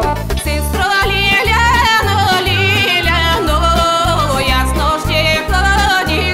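A woman singing a Bulgarian folk song in a bright, ornamented voice with heavy vibrato, entering about half a second in, over a backing band with a steady bass beat.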